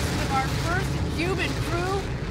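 The New Shepard rocket's BE-3 engine gives a steady low rumble as it climbs after liftoff, with people's voices calling out over it.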